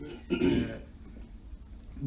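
A man clearing his throat once, a short rough burst about a third of a second in.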